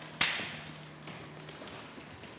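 A sheet of paper handled close to a desk microphone: one sharp rustle about a quarter of a second in, fading over half a second, then quiet room tone.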